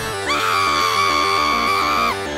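A long, high-pitched scream held steady for nearly two seconds, over dramatic music with a run of quickly changing notes.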